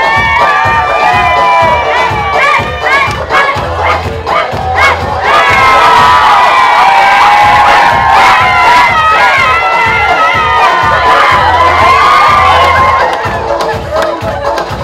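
A crowd of guests cheering and shouting loudly, many voices at once. It grows louder about five seconds in and eases near the end.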